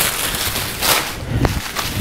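Paper sewing-pattern pieces pinned to cotton fabric rustling and crinkling as they are handled and moved, with a soft knock about three-quarters of the way through.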